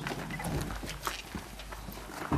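Footsteps of a small group walking on pavement, with a run of sharp, irregular clicks.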